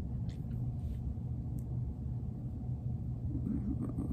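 Low steady rumble of room tone, with a few faint soft ticks in the first couple of seconds.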